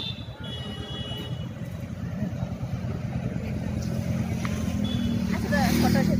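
A road vehicle's engine running close by, a low hum that grows steadily louder as it approaches. People's voices can be heard faintly underneath.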